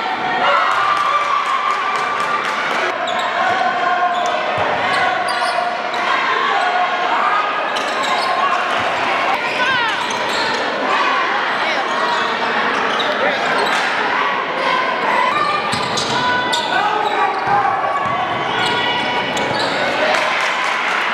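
Basketball dribbled and bouncing on a hardwood gym floor during live play, amid overlapping shouts from players, coaches and spectators echoing in the gym.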